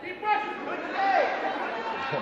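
Several people shouting and talking over one another, the raised voices of spectators and coaches calling out during a wrestling bout.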